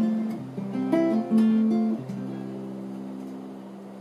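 Solo acoustic guitar: a few chords strummed in the first two seconds, then one chord left ringing and slowly fading.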